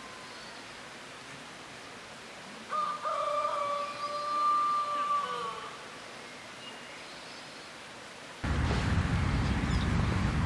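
A rooster crowing once: a long held call that breaks briefly near its start and falls away at the end, over a faint hiss. Near the end a loud, steady rushing noise starts suddenly.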